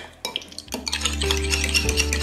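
A utensil stirring thick cranberry and chili sauce in a glass measuring cup, with small scrapes and clinks against the glass. Soft background music with held notes comes in under it a little under a second in.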